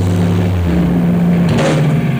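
Live stoner rock band with heavily distorted guitars and bass holding a low, sustained chord. A cymbal is struck near the end.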